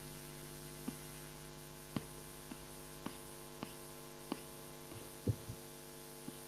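Faint steady electrical hum, with a scatter of faint clicks at irregular intervals of roughly half a second to a second.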